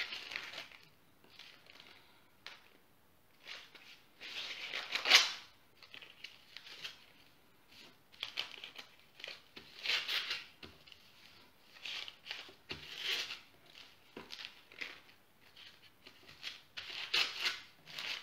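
Squares of baking paper rustling and crinkling as they are picked up and handled, in short irregular bursts, the loudest about five seconds in.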